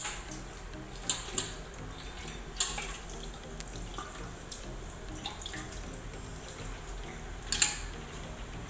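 Milk squirting from a cow's teats into a metal milk can during hand milking, in short irregular spurts, with a louder cluster about a second in and another near the end.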